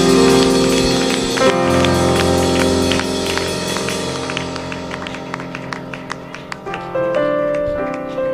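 A church band's sustained chords ring out and fade at the close of a gospel song, with scattered hand claps over the fading music.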